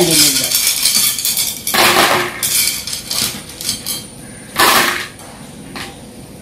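Small pebbles and coloured glass beads tipped from a glass plate into a glass bowl, clattering against the glass. A long rattling pour comes first, then a short spill about two and a half seconds in and another about five seconds in.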